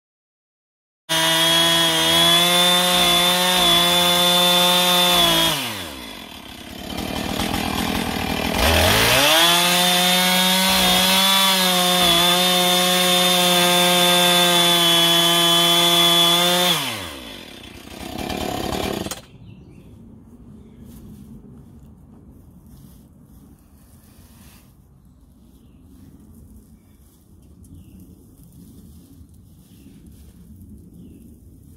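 Gas chainsaw cutting into a straw bale wall at full throttle. About five seconds in it drops to idle, then revs back up and cuts again until about seventeen seconds. A short rev follows and the saw stops. Faint rustling of straw remains afterwards.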